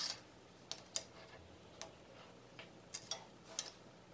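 Faint, irregular ticks and taps, about seven in all, as fingers handle and fold a piece of fused wool fabric on a wooden tabletop.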